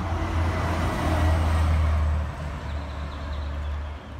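Street traffic: a motor vehicle's engine rumbling close by, with road noise that swells about a second in and eases off after the midpoint.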